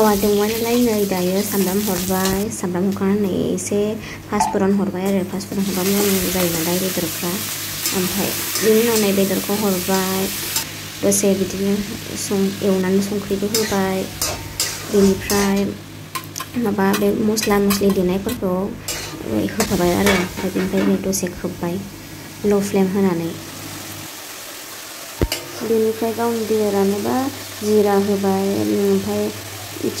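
Broiler chicken frying in hot oil in an iron wok, sizzling, with a metal spatula stirring and scraping against the pan. A person's voice, rising and falling in pitch, runs over much of it in short stretches.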